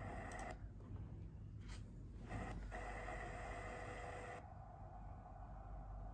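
Faint soundtrack of a stop-motion digital film played through laptop speakers: a low hum with a few steady droning tones that cut out abruptly about half a second in, come back a couple of seconds later, and partly drop away again near the end.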